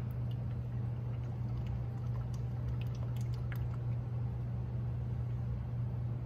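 Motor oil pouring from a plastic quart bottle into a 3D-printed threaded oil-filler funnel, with faint scattered glugs and splashes, over a steady low hum.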